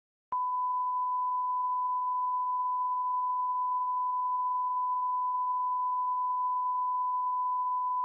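A 1 kHz test tone, the reference tone that goes with TV colour bars. It starts abruptly with a click a moment in and holds one steady pitch at an even level.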